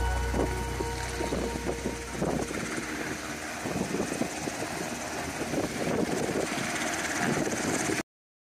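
Background music with a deep bass fades out over the first two seconds. Under it, and then alone, a UH-60 Black Hawk helicopter runs in the distance as an uneven rushing noise. The sound cuts off suddenly at the end.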